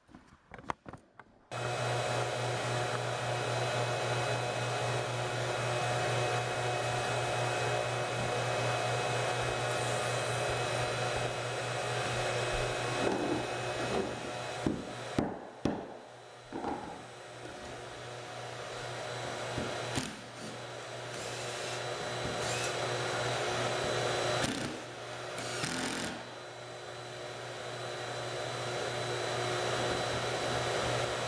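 An electric motor starts about a second and a half in and runs steadily on, with a few sharp hammer knocks about halfway through.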